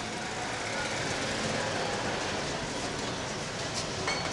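Steady din of street traffic, motor scooters and auto-rickshaws, with voices of people in the street mixed in.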